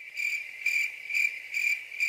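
Crickets-chirping sound effect, used as a comic 'awkward silence' gag: a steady high chirring that swells about twice a second, cut in and out abruptly.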